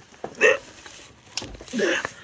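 A man's short wordless vocal sounds, twice, with a single sharp click about two-thirds of the way through as a switch on an extension lead is turned off.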